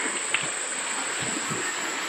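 Shallow creek water running steadily over stones in a rainforest, with a constant high-pitched insect drone above it.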